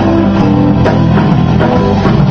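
A live rock band playing: electric guitars over bass guitar and a drum kit, with a steady beat.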